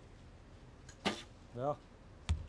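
A recurve bow being shot: one sharp snap of the string's release about a second in.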